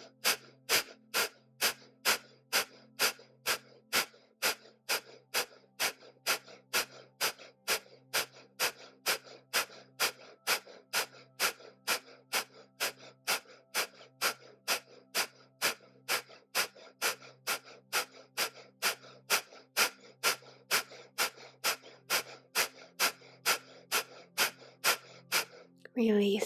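Kundalini breath of fire: rapid, forceful exhalations out of the nose, each driven by a pump of the stomach, about two a second in an even rhythm.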